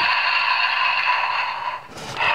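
Hasbro talking Hulk action figure's sound chip playing a rough growling roar through its tiny built-in speaker, thin and tinny with no bass. It lasts nearly two seconds and cuts off just before the end.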